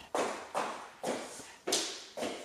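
A toddler's footsteps in sneakers on a hard plank floor: four steps, about one every half second, each a short scuff that fades quickly.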